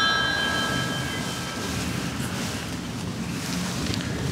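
A bell's ring dying away, several clear tones fading out over the first second or two, leaving steady outdoor background noise.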